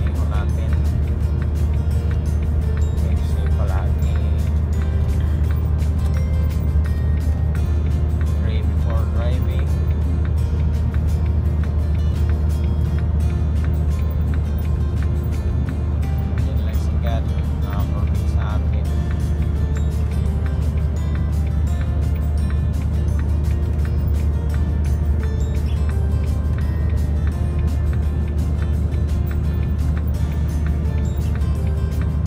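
Steady low drone of a truck's engine and road noise heard inside the moving cab, with music playing over it.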